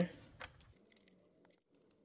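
Near silence, with a few faint small clicks from a brass oil-pressure test adapter being threaded by hand into the engine's oil pressure sensor port.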